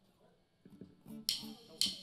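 A count-in before a country song: two sharp clicks about half a second apart in the second half, over a few soft guitar notes.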